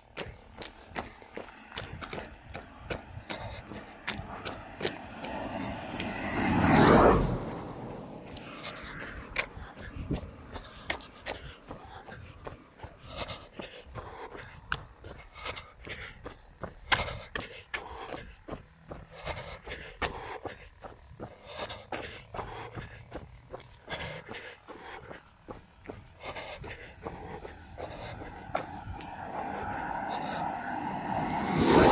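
A runner's footsteps and breathing picked up by a hand-held phone, with knocks and rubbing from the phone itself. A louder rush of noise swells and fades about seven seconds in.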